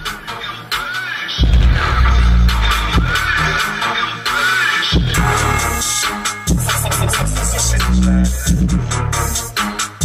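An electronic music track played through a truck's aftermarket car-audio system with dual Rockford Fosgate P1 10-inch subwoofers, heard inside the cabin. Heavy bass comes in about a second and a half in and keeps pulsing, with short drops.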